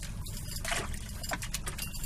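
Water splashing and dripping as a wire fish trap is shaken out over a boat's live well, in many short splashes over a steady low hum.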